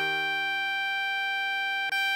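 Alto saxophone melody holding one long note, written E6 (concert G5), over a sustained E-flat major chord. The same note is sounded again just before the end.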